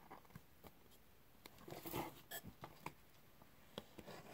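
Near silence with faint handling noise: a few light clicks and a soft rustle near the middle as a hot-glued craft-stick seat is pressed into place and handled.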